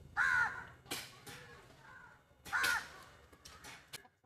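A crow cawing: two clear caws, one at the start and one about two and a half seconds in, with fainter calls between them.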